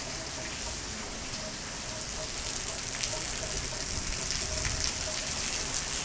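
Steady rain falling, a little louder from about halfway through, with a few close drops ticking.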